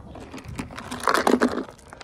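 Clicks and rustles of a plastic food-storage cache container being handled and brought out, with a short pitched vocal sound about a second in.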